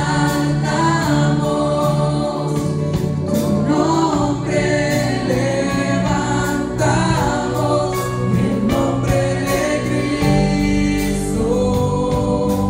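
Live worship music from a church band, with drum kit, electric guitar and keyboard, and women singing in Spanish over a steady drum beat.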